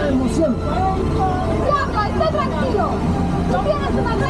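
Voices chattering over the steady low rumble of the moving open ride vehicle.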